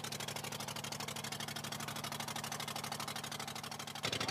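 Diesel engine of an old passenger boat running steadily, a fast, even pulsing over a steady low hum.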